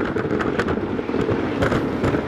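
Wooden roller coaster train clattering over its wooden track at speed, heard from on board: a steady low rumble packed with rapid, irregular knocks.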